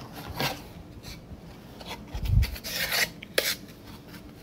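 A wooden board being handled and slid against a surface close to the microphone: a string of short rasping scrapes and rubs, with a dull thump a little past two seconds in.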